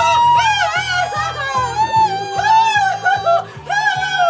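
Several young men sing a Christmas pop song loudly and playfully over a backing track with a steady beat. The voices hold long high notes and slide between them.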